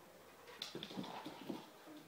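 A young puppy making a few short, faint vocal sounds, clustered between about half a second and a second and a half in.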